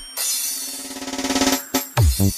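Electronic disco remix dance music at a build-up: a fast drum roll with cymbals swells in loudness over about a second and a half, then drops out briefly near the end.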